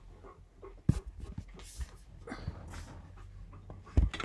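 Low room noise over an open microphone, with a sharp knock about a second in, a few softer ticks, and two short breathy rustles.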